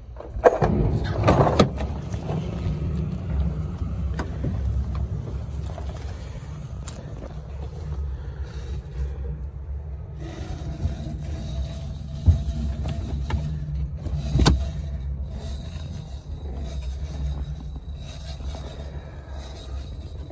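Steady low rumble throughout, with a few sharp knocks and handling clatter about half a second and a second and a half in, and again around twelve and fourteen seconds in.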